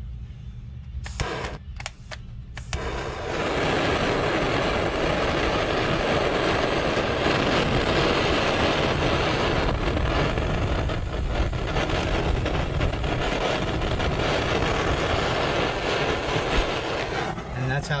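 Electric heat gun blowing a steady rush of hot air to shrink heat-shrink tubing over a soldered wire splice. It comes on about three seconds in, after a few short clicks, and cuts off shortly before the end.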